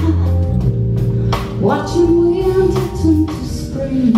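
Live jazz band playing: a woman singing long held notes over stage piano, electric bass and drum kit, with cymbal hits.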